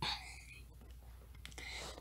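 Faint breathing of the narrator: a quick, hissy intake at the start that fades fast, and another breath near the end just before speech resumes, with a couple of faint clicks in between.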